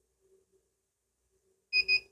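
A few quick high-pitched beeps near the end from the Xiaomi Five UV-C sterilizer lamp, its answer to a long press on its physical button that begins the startup sequence.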